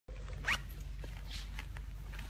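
A short rising zip-like scrape about half a second in, with a few faint clicks, over a steady low hum.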